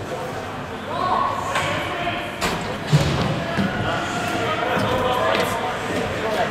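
Voices calling out across an echoing indoor ice rink during a hockey game, with two sharp knocks about two and a half and three seconds in, the second the loudest.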